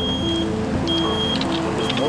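Box delivery truck reversing, its backup alarm giving a high, steady beep about once a second over the engine running.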